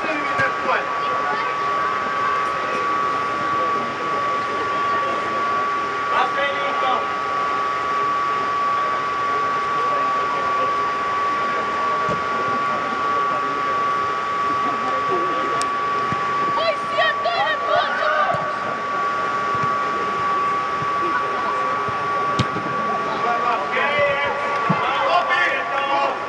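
Steady hum of the air-supported sports dome's blower machinery, with a constant whine, under intermittent shouts and calls from players on the pitch.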